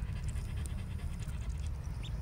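Ducklings feeding and drinking at a feeder and waterer: scattered quick small ticks of bills pecking and dabbling, with faint short peeps, over a steady low rumble.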